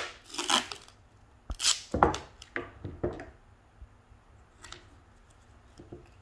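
Duct tape ripping: several short, sharp rips as strips are pulled off the roll and torn in the first three seconds, then only faint handling of the tape.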